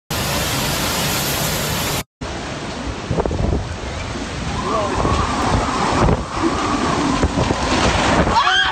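Hurricane wind and rain buffeting a phone microphone as a steady, loud rush of noise, broken by a brief cut to silence about two seconds in before the noise resumes.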